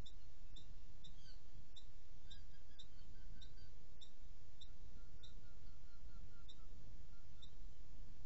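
Short, high-pitched chirps repeating about twice a second, stopping shortly before the end, over a steady low rumble.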